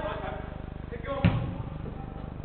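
A football kicked once, a single sharp thud a little over a second in, with a short echo from the indoor hall.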